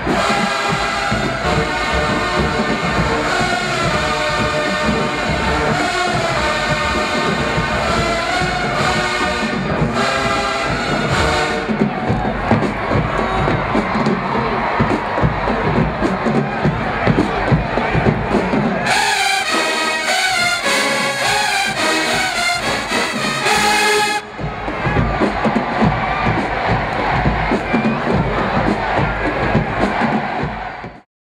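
A large marching band's brass section, led by sousaphones, playing in the stands over a cheering, shouting crowd. About two-thirds through, the band hits a loud, punchy passage that cuts off suddenly, leaving the crowd noise.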